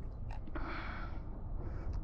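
A soft breath close to the microphone, a hiss lasting about a second, over a steady low rumble.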